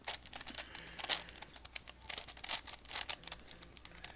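Plastic V-Cube 7x7x7 puzzle cube being turned by hand: irregular clicks and clatters of its layers turning, with a few sharper ones about a second in and again between two and three and a half seconds.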